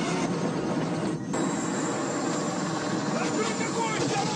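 Action-film soundtrack: a helicopter running steadily, with a man shouting near the end.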